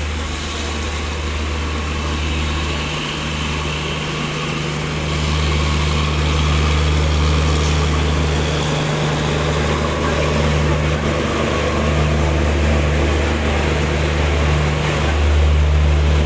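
LHB passenger coaches of a departing express rolling past, ending with the end-on-generation power car, with a steady low engine hum from its diesel generators that grows louder in the second half.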